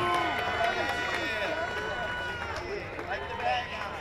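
Indistinct crowd chatter: many overlapping voices talking, with no single clear speaker, and a few steady background tones that fade out about halfway through.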